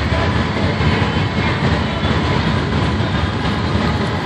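Steady low rumble of a slow-moving vehicle: engine and road noise.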